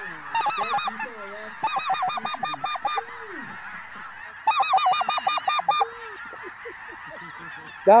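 Geese calling as a flock comes in: three bursts of rapid, high yelping calls in the first six seconds, with fainter, lower calls in between and after.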